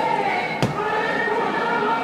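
Many voices singing together in long held notes, with one sharp knock about half a second in.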